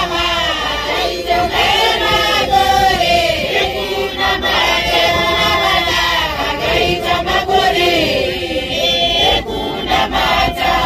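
A Johane Masowe church congregation of women and children singing a hymn together in chorus, many voices blended and continuous.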